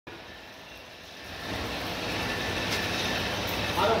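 Steady machinery noise from an online PVC pipe printing line running, growing louder about a second and a half in.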